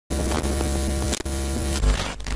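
Logo-intro sound effect: a loud electric hum and buzz with static, broken by brief glitchy dropouts about a second in.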